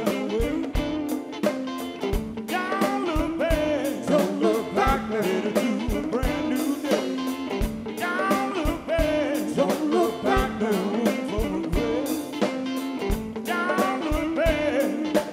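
A live soul and blues-rock band playing a groove, with a singer's voice over dense, even drum and percussion hits from bongos and timbales.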